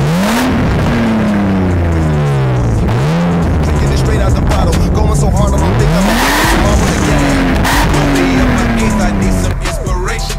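BMW E36 engine revved from idle through its twin-tip exhaust in an underground car park, three blips of the throttle. The second is short, and the last rises highest near the middle and winds back down slowly.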